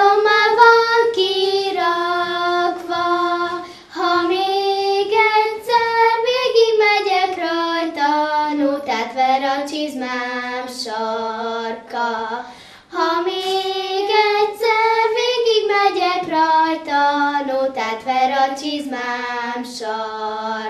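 Two young girls singing a song together in unison, unaccompanied, in sung phrases with short breaks between them.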